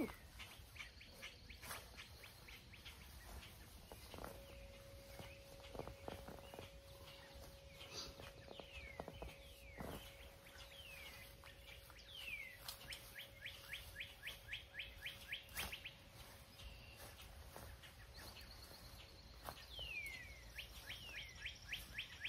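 Faint birdsong: small birds chirping in quick repeated runs and swooping calls, with a few soft knocks of a shovel digging into soil.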